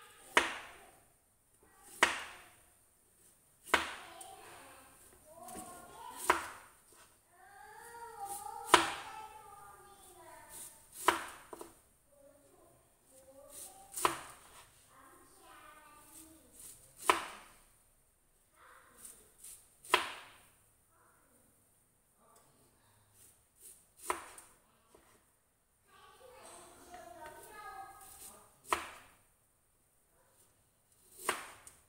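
Kitchen knife slicing through bamboo shoots and striking the cutting board: single sharp knocks every two to three seconds, about a dozen strokes.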